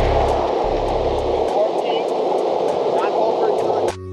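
Steady rushing wind and motion noise on the microphone of a camera moving alongside a runner, with a deep rumble in the first second and a half.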